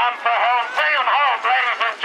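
A man's voice calling the chuckwagon race, fast and unbroken.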